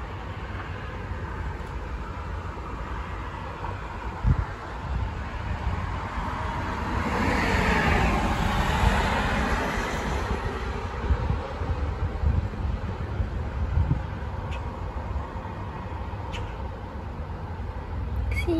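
A passing vehicle: a rush of noise that rises to a peak about eight seconds in and fades away, over a steady low rumble.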